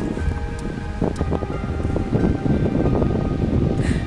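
Wind buffeting the camera microphone in uneven gusts, strongest in the middle, over faint steady tones of background music.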